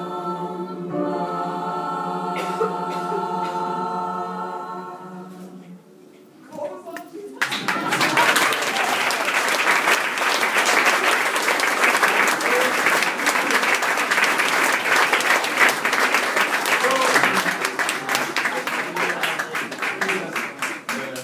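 A choir holds a final sung chord that fades out about five seconds in. From about seven and a half seconds in, applause breaks out and goes on steadily.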